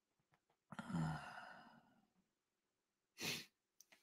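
A man's sigh: a voiced exhale about a second in that fades out within under a second, followed by a short breath in just before he speaks again.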